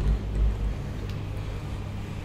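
Steady low hum from an appliance or motor in the flat, with a loud low thud right at the start and smaller bumps about half a second in: handling noise from the phone camera being carried from room to room.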